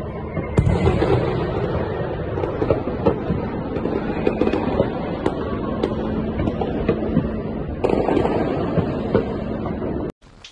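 Many fireworks going off across a city. The distant bangs blend into a continuous rumble, with frequent sharper pops and cracks at irregular intervals.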